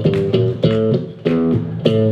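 Acoustic guitar fingerpicked in a blues style: a run of separate plucked notes, broken by a brief pause a little past halfway.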